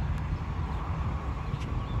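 Distant low rumble of Blue Angels F/A-18 Super Hornet jet engines as the jets pass far off, with a few faint bird chirps above it.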